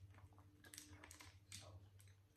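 Near silence: room tone with a low, steady hum and a few faint, short clicks.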